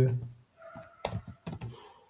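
Computer keyboard being typed: a few separate keystroke clicks, starting about a second in.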